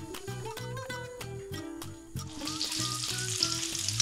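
Pistachio-crusted tuna fingers sizzling as they hit hot oil in a frying pan to be seared, the sizzle setting in about two seconds in and then holding steady.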